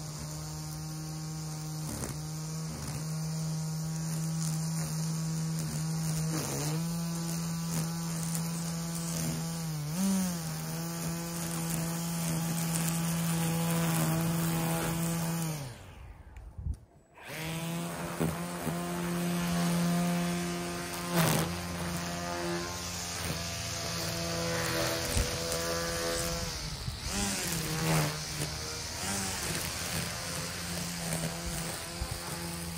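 EGO cordless electric string trimmer running at speed, a steady motor-and-line whine whose pitch dips briefly as it bites into grass, with occasional sharp ticks. About halfway through it cuts out for about a second, then starts again. The trimmer is nine years old and still on its original battery.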